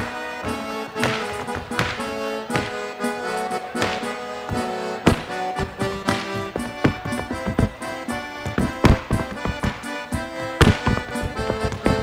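Accordion playing a lively traditional gaucho chula tune in held chords, with the dancer's boots striking the stage floor in sapateado footwork. The strikes are sparse at first and come in quick rapid runs in the second half.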